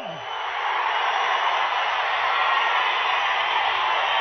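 A large crowd cheering together, a dense, steady wash of many voices that builds over the first second and then holds.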